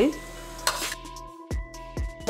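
Chopped onions and green chillies sizzling as they fry in oil in a steel pot, with a utensil knocking against the pot a couple of times as they are stirred.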